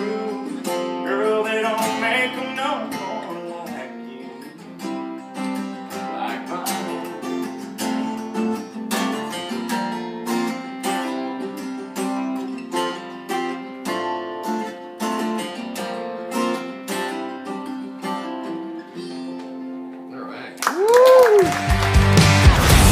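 Two acoustic guitars playing the song's closing instrumental passage: picked single notes and light strums over a held low note, with a sung line trailing off in the first few seconds. About a second and a half before the end, a loud radio-station ident begins, a whoosh with a tone that swoops up and down.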